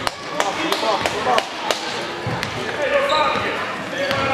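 Basketball being dribbled on a hardwood gym floor: a series of sharp bounces about every third of a second, thinning out about two and a half seconds in, over background crowd voices.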